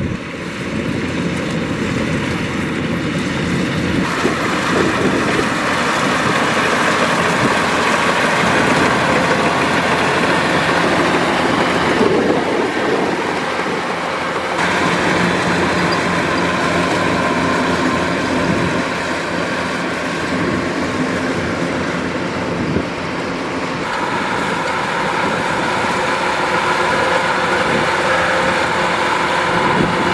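Kubota DC-105X tracked combine harvester running while cutting rice: its diesel engine and threshing machinery make a loud, steady mechanical drone.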